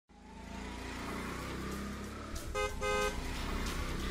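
Street traffic sound effects fading in, with a steady rumble of car engines, then a car horn tooting twice in quick succession about two and a half seconds in.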